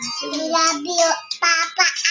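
A young girl singing a melody in a high child's voice, her pitch stepping and bending from note to note.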